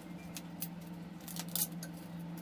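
Hot cooking oil crackling and spitting in a nonstick pan: scattered sharp pops, the loudest cluster about one and a half seconds in, over a steady low hum.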